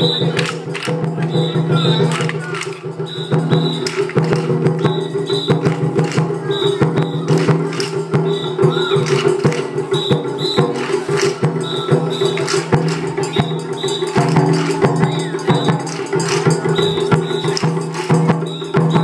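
Japanese festival float music (matsuri-bayashi) with dense percussion. A bright metallic double strike repeats about once a second over steady held tones and many rattling clicks.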